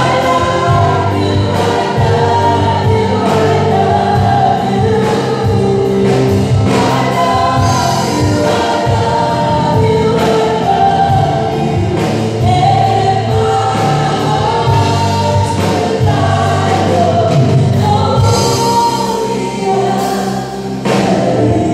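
A live praise band performing a worship song: several singers on microphones singing together over band accompaniment, amplified through a PA.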